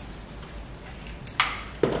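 Two sharp clicks a little under half a second apart near the end, the second the louder, over faint room tone.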